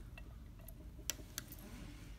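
A few faint, separate clicks of small metal snap parts being fitted onto the die of a hand snap press.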